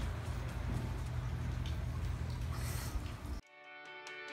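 A steady low rumble and hiss of outdoor ambience. Near the end it cuts off suddenly and background guitar music begins.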